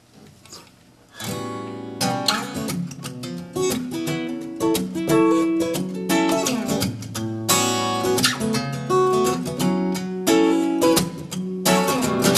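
Steel-string acoustic guitar with a capo playing a song's intro chords, starting about a second in with a steady run of picked and strummed strokes.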